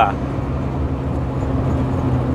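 Truck's diesel engine running steadily while cruising, with a constant low drone and road noise, heard from inside the cab.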